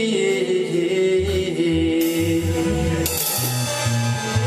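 Organ-backed song with some singing, with live drums played along: a pulsing low bass beat from about a second in, and cymbal crashes about two and three seconds in.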